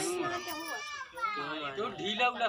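A small child crying in high, wavering wails, over a background of voices.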